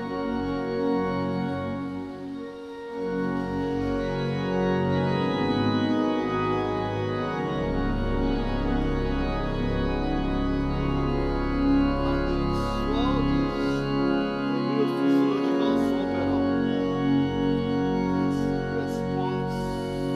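Two-manual, 27-stop Sanus church organ playing sustained chords on both manuals. A deep bass note comes in about a third of the way through and drops out about halfway.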